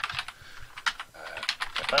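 Typing on a computer keyboard: an irregular run of keystrokes as a line of code is entered.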